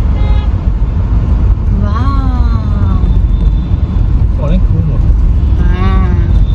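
Steady low rumble of a car on the move, heard from inside its cabin, with a few short snatches of voice over it.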